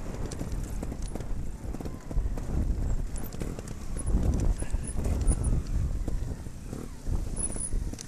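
Trials motorcycle rolling slowly down a rough grassy slope: a low rumble with irregular knocks and rattles as the bike jolts over bumps and stones, heaviest through the middle.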